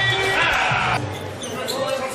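Basketball arena sound of a game broadcast: crowd noise and court sounds, which cut off abruptly about a second in to a quieter stretch.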